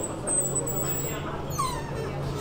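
Shop background: a steady low hum and a thin high steady tone, with faint voices in the background. A brief high-pitched cry that falls in pitch comes near the end.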